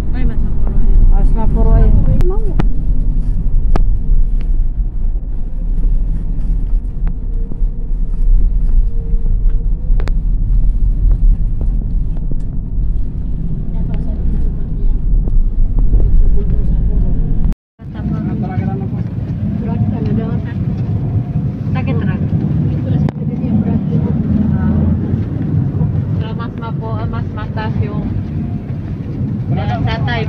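Moving road vehicle: steady road noise with a heavy low rumble of wind buffeting, heard from a side window. Just over halfway through, the sound drops out for an instant at a cut, and the rumble then comes back lighter.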